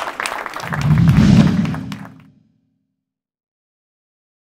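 Audience applauding, with a loud low rumble under the clapping about a second in; the sound cuts off abruptly to silence about two and a half seconds in.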